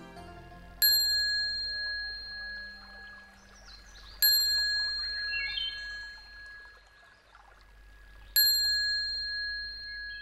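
A bell struck three times, about three and a half to four seconds apart, each stroke ringing with a clear high tone that slowly fades.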